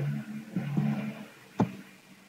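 A low steady hum for about the first second, then a single sharp keystroke on a computer keyboard about one and a half seconds in, as code is typed.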